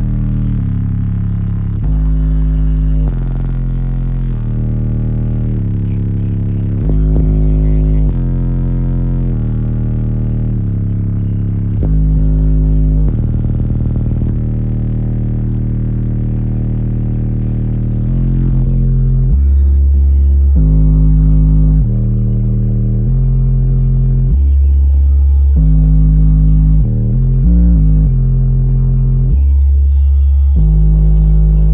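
Bass-heavy music played loud through a car audio system's four subwoofers, heard from inside the closed cabin. Deep bass notes step from pitch to pitch, and the bass gets louder about eighteen seconds in.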